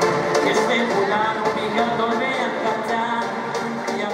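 Live concert music with a man singing a song into a microphone over the band's accompaniment.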